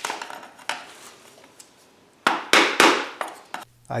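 Hammer striking a screwdriver used as a chisel, chipping hardened aluminum off the foundry's steel bucket shell. There are several sharp metal strikes, the loudest three in quick succession just past halfway.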